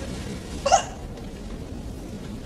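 A single short vocal sound, like a hiccup or yelp, about three-quarters of a second in, over low steady room noise.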